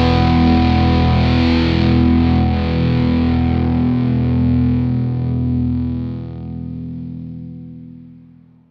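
Rock music: distorted electric guitar with effects holding a sustained, ringing chord, which fades away over the last couple of seconds as the track ends.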